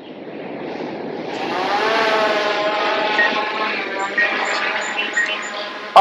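DJI Air 2S quadcopter's propellers spinning up for takeoff. It starts as a whine that rises in pitch over the first two seconds, then becomes a steady buzz of several tones that fades a little as the drone lifts off and climbs away.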